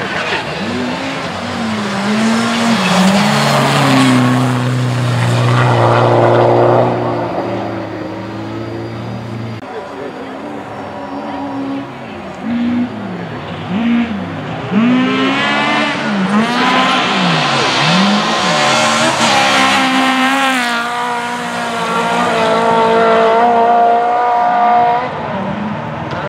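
Rally car engine at full throttle on a gravel-and-snow special stage. The pitch climbs and drops sharply again and again as the car accelerates and comes off the throttle, loudest around a third of the way in and again through the second half as it passes.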